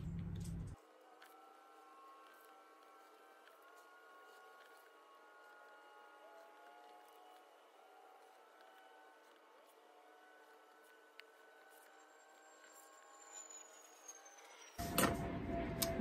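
Near silence: faint, thin steady tones that shift in pitch now and then, with a few faint clicks. A voice comes in near the end.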